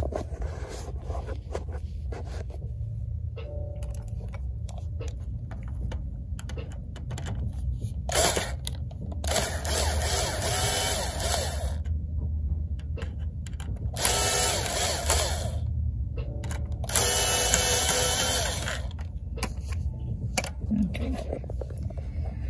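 Cordless drill driving out small screws from a clear plastic coin mechanism, whirring in three runs of about two seconds each, with a short blip just before the first.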